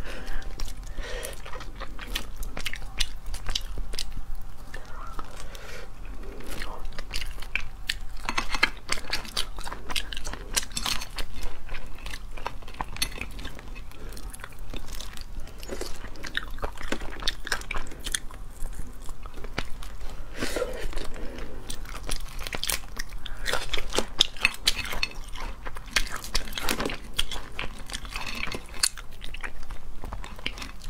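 Close-miked eating of boiled crayfish: shells cracking and crunching between the teeth and fingers, many sharp irregular clicks, with wet chewing in between.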